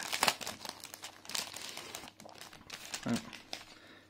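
Clear plastic kit packet crinkling as it is opened and the paper contents are pulled out, loudest in the first two seconds, then fainter rustling.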